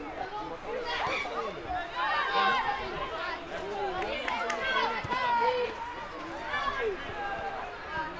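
Several voices calling out and chattering over one another on a football pitch, the shouts of players and people on the sideline during play.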